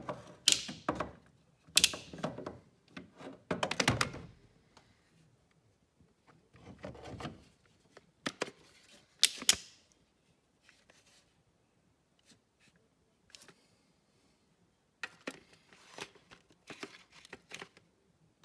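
Hand tools clinking and knocking against the metal timing-belt tensioner and engine parts. There are irregular sharp clicks, several close together in the first four seconds and a few more around eight to nine seconds, then a quiet stretch and a run of lighter clicks near the end.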